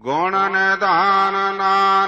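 A solo voice chanting a line of Gurbani in the melodic recitation style of a hukamnama. It holds one long steady note, with a short downward bend in pitch about a second in.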